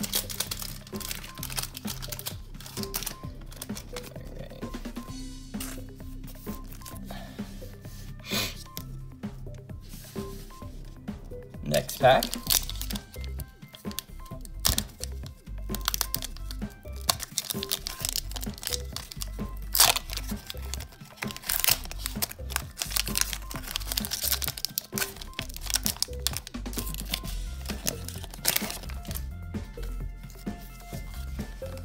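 Hand-held foil booster-pack wrapper and plastic card sleeves crinkling and rustling in bursts, with some tearing as a pack is opened; the loudest crackles come about 12 and 20 seconds in. Quiet background music plays underneath.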